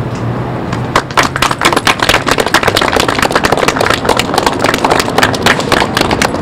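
A small group of people applauding, dense irregular hand claps starting about a second in.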